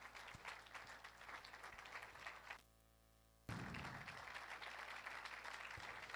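Congregation clapping, faint and continuous. The sound cuts out completely for about a second near the middle.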